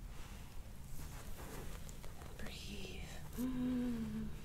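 Quiet whispered voice, then a woman's voice holding a hummed "mm" on one steady pitch for about a second near the end.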